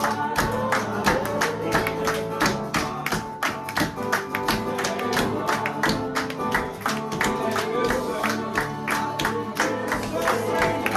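Acoustic guitar strummed while a group of people clap in a steady rhythm and sing a worship song together.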